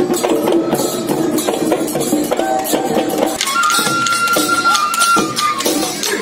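Assamese Bihu folk music played live: dhol drums beating a steady rhythm, with a high held note coming in about halfway through.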